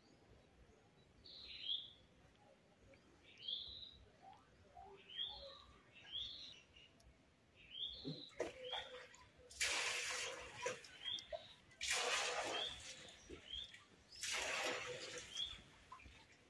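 Short, high chirping calls, each a quick downward sweep, repeated every second or two. In the second half, three louder bursts of rushing noise, each lasting about a second and a half, break in over them.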